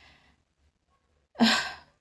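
A woman's audible breath, about half a second long, near the end of a near-silent pause in her speech.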